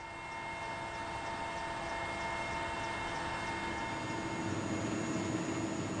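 Helicopter in flight, heard from the cabin: a steady engine and rotor noise with a high whine in it, swelling over the first couple of seconds and then holding steady.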